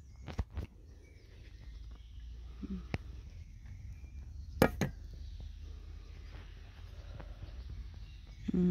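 Sharp handling knocks and clicks from a stainless steel pet food bowl held close to the microphone, the loudest a double knock about four and a half seconds in, over a low steady rumble.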